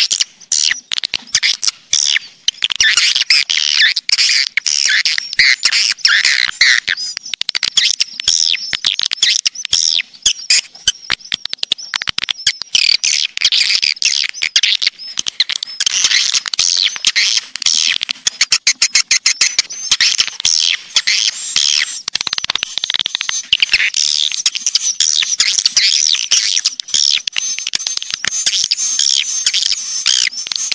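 Recorded swiftlet (walet) calls: a dense, unbroken chatter of rapid high chirps, twitters and clicks. It is a swiftlet lure call track ('suara panggil walet'), played to draw swiftlets into a nesting house.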